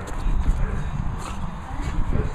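A French bulldog playing roughly with a large plastic toy on grass: the dog's snuffling breath mixed with irregular knocks and rustles of the toy as it is shaken and shoved about.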